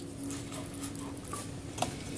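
Close-miked chewing with a closed mouth: soft wet mouth clicks and smacks, a sharper click a little before the end, and a faint low hum in the first half.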